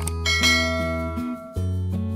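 Acoustic guitar background music with a click, then a bright bell chime ringing out and fading about half a second in: the notification-bell sound effect of a subscribe animation.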